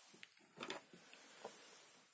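Near silence with a few faint light clicks: a printed circuit board panel of small USB charging modules being handled and picked up off the table.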